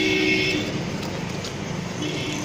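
Street background noise with traffic, and a held steady tone that stops about half a second in.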